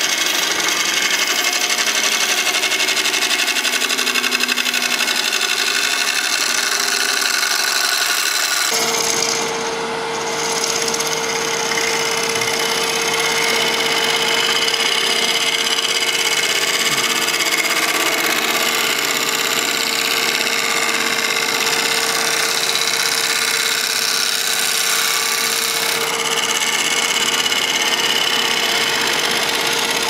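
Carbide negative-rake scraper cutting the inside of a spinning epoxy-resin-and-hardwood bowl on a wood lathe, a steady hissing scrape as shavings fly off. About nine seconds in the sound fills out lower and a steady hum comes in under the cutting.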